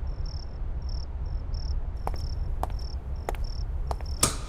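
Crickets chirping, short high chirps repeating about two to three times a second over a steady low hum, with a few faint ticks in the second half.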